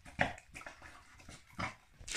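A terrier-cross-spaniel eating raw chicken-and-liver mince from a stainless steel bowl: wet chewing and licking in short, irregular mouthfuls, the loudest about a fifth of a second in.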